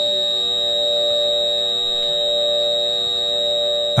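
Digital audio feedback from Ableton's Roar distortion fed back into itself through send-return loops: a steady, held feedback tone, a high whistle over several lower held tones.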